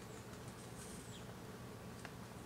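Faint steady buzzing of a flying insect.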